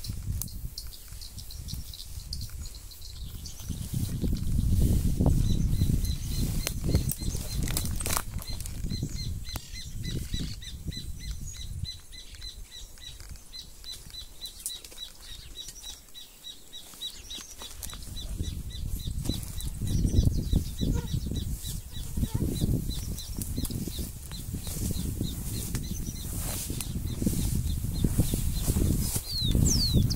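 Wind buffeting the microphone in gusts, a low rumble that swells and fades several times. Behind it, a steady run of short, high chirps from about six seconds in until near the end.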